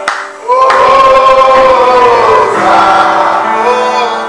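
Music with group singing: voices holding long notes that glide up and down, with a short break about half a second in.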